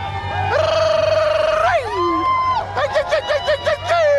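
Runners whooping and cheering at a mass race start: a long held "woo" that falls away, a higher call, then a quick string of yips, over a steady low hum.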